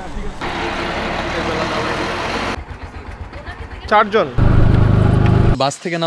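Vehicle noise: a steady rushing hiss for about two seconds, then a loud, low engine hum for about a second, with a brief voice between them.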